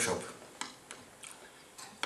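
A voice trails off right at the start, then a few light, sharp clicks come at scattered moments.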